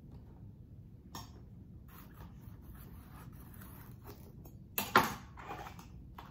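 A kitchen knife cutting into a green bell pepper and striking a cutting board with a sharp double knock about five seconds in, after a lighter click about a second in, with faint handling sounds in between.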